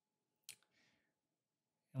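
Near silence, broken by a single short click about half a second in, followed by a faint, brief hiss.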